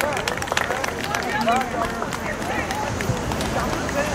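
Overlapping voices of football players and spectators calling out at once, with no single voice standing out, and scattered sharp clicks.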